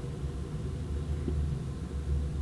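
A steady low rumble of background noise with no speech, and a faint tick about a second in.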